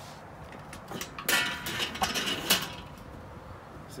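Black enamelled metal lid of a kettle grill being swung open, with a scraping, rattling metal sound starting a little over a second in and a sharp knock about a second later.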